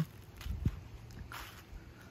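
Faint, irregular footsteps through fallen leaves on a dirt track.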